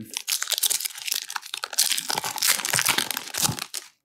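Foil wrapper of a Pokémon XY Evolutions booster pack crinkling as it is torn open by hand: continuous dense crackling that stops just before the end.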